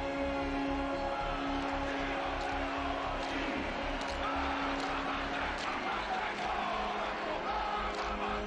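Background music with long held low notes over a pulsing bass beat, with stadium crowd noise mixed underneath that swells a little around the middle.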